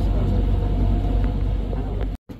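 Boat motor running steadily: a low rumble with a faint, even hum above it.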